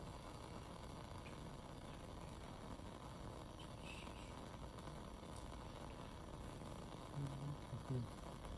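Faint steady hiss of a lit Bunsen burner's gas flame while a flamed inoculating needle cools, with a brief low hum of a voice near the end.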